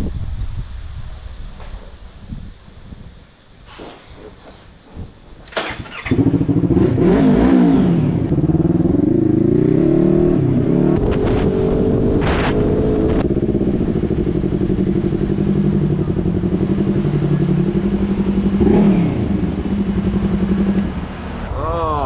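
A motorcycle with a custom exhaust being ridden, its engine note rising and falling through gear changes; it comes in abruptly about six seconds in and eases off near the end. Before it, the first seconds are quieter, with a steady high hiss.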